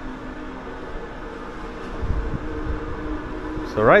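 Steady mechanical hum with several held tones, from a docked cruise ship's ventilation and machinery, heard on its open deck. A low rumble joins about halfway through.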